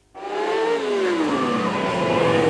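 Stunt motorcycles' engines running, starting abruptly just into the clip, with the engine note falling steadily in pitch as the revs drop or the bikes pass.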